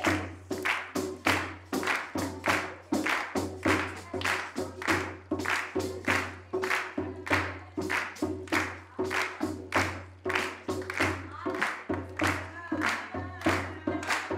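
Frame drums beaten in a steady dance rhythm, about three strokes a second, each with a deep thud, with hands clapping along. A sung phrase ends right at the start.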